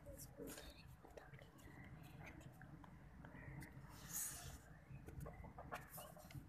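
Near silence: faint background noise with scattered small ticks and a short hiss about four seconds in.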